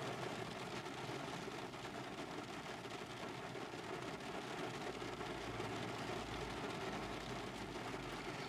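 Steady noise inside a car's cabin: rain on the roof as an even hiss, with a low rumble that swells about five seconds in.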